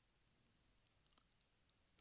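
Near silence, with a couple of very faint clicks about a second in.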